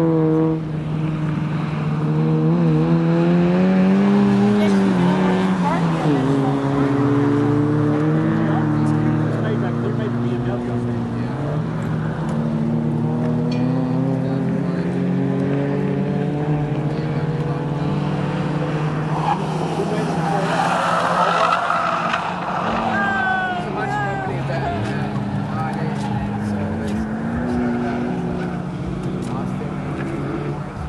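Race cars' engines on the circuit, several at once, revving up and falling away through the gears as they lap, with a brief high squeal about two-thirds of the way through.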